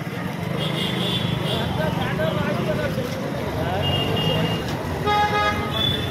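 Busy street traffic with men's voices talking, and a vehicle horn honking for under a second about five seconds in. Shorter, higher-pitched beeps sound about a second in and around four seconds in.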